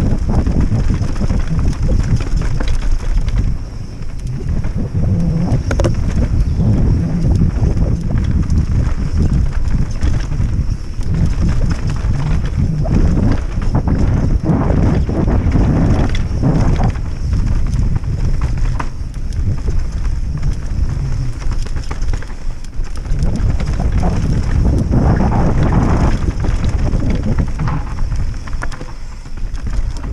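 Mountain bike descending a dirt forest trail at speed: a steady rumble of wind buffeting the camera's microphone and tyres on dirt, with irregular rattles and knocks from the bike over bumps.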